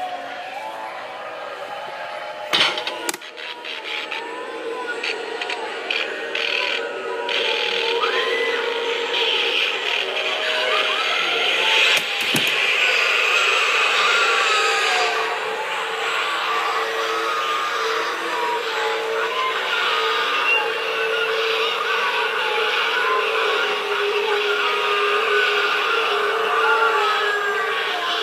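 Halloween animatronic props running: a jumble of wavering, gliding voice-like effects over a steady held tone. There are sharp knocks about two and a half and twelve seconds in.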